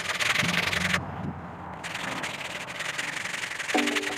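Sandpaper rubbed by hand along a hard maple walking stick: a dense scratchy rasp of quick strokes, easing off briefly about a second in and then starting again.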